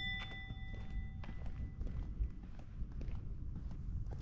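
Footsteps with soft irregular knocks over a low rumble, while a bell-like chime rings and fades away over the first second or two.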